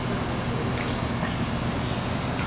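Steady low hum and rumble of an indoor arena's large wall-mounted ventilation fans running.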